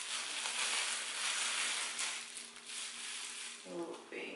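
Disposable plastic gloves rustling and crinkling against the hair as hair dye is squeezed from an applicator bottle and worked into locs, a steady rustle.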